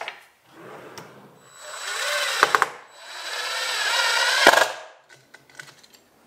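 A plywood drawer rolling on full-extension ball-bearing drawer slides, twice: each run is a whirring rumble of about a second that ends in a sharp knock as the drawer hits the end of its travel. A couple of light clicks come first.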